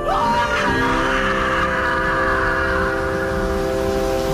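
A woman screaming at full voice, rising at the start and held for about three seconds, over a sustained music chord.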